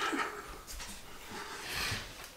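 A man's soft breathy exhalations, a few wordless breaths or sighs, as he is overcome with joy.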